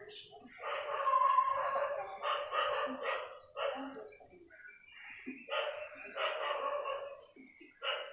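A dog barking repeatedly in the background, in several runs of barks with short pauses between them.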